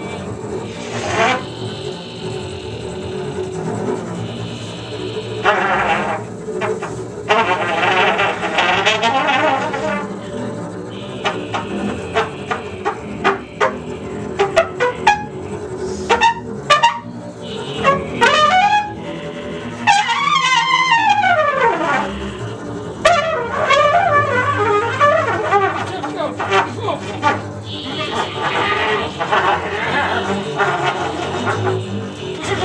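Free improvisation on trumpet and bowed double bass with a wordless voice: held and wavering tones, a cluster of sharp clicks or pops about halfway through, then long sliding glides in pitch.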